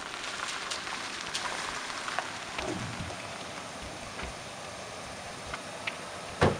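Steady rain falling, an even hiss with scattered sharp drop ticks.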